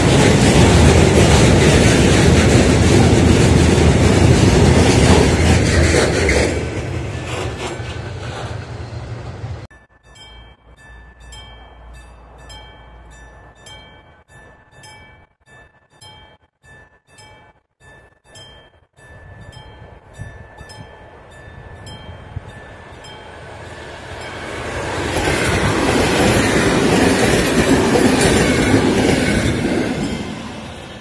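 Freight train of covered wagons rolling past, a loud rumble with wheel clatter that fades after about six seconds. After an abrupt cut it is quiet with a regular series of short pinging ticks. From about 24 seconds a loud rushing rail noise builds as another train approaches, then falls off at the end.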